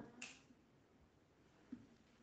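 Near silence: room tone, with a brief sharp sound just after the start and a faint soft knock near the end.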